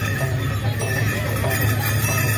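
Live traditional Newar drum-and-cymbal music accompanying a Lakhe masked dance, playing steadily, with voices of the street crowd underneath.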